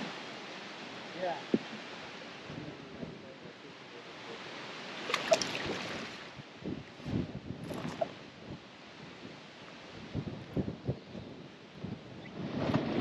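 Wind and water lapping around a fishing boat, with a few short splashes and knocks as a small largemouth bass is fought to the boat and lifted aboard, most of them about halfway through and again near the end.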